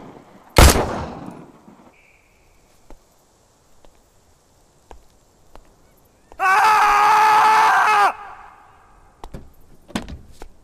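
A single pistol shot about half a second in, its echo dying away over the next second. About six seconds in, a loud, steady, high-pitched tone holds for nearly two seconds; faint clicks follow near the end.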